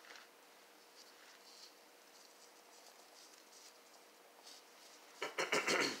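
Faint scratchy rustling of nitrile-gloved hands wrapping a soft caramel rope around a pretzel rod, then a short, loud cough near the end.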